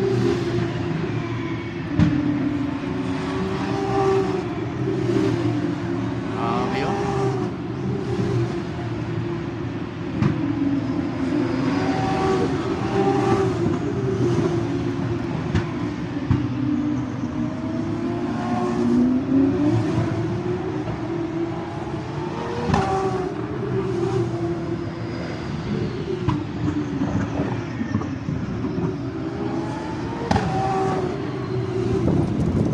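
Racing engines of Formula 1 cars running around the circuit, heard as a continuous drone whose pitch rises and falls as the cars accelerate, brake and pass, with voices in the background.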